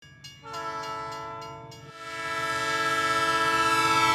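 Train horn sounding a chord of several steady tones in two long blasts, the second swelling louder toward the end.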